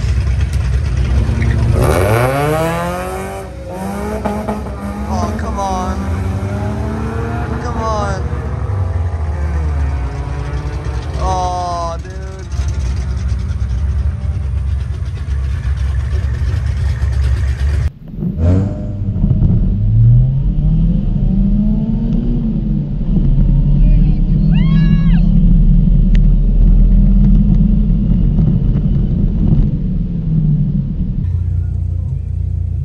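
A supercharged car launches hard from the drag-strip start line and accelerates through several gear changes, its engine pitch rising and then dropping back at each shift. After a sharp break about two-thirds of the way in, a lower engine drone follows, its pitch wavering up and down.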